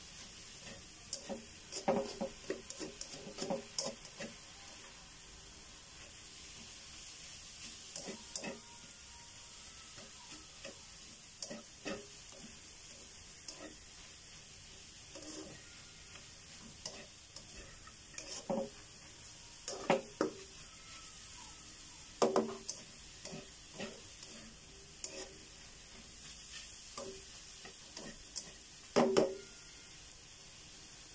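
Cabbage and egg sizzling in a frying pan with a steady hiss while a spatula stirs and scrapes through it, with irregular clacks of the spatula against the pan. The loudest knocks come about two-thirds of the way through and near the end.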